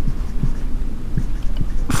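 Dry-erase marker writing on a whiteboard: soft, irregular low thuds from the strokes over a steady low hum.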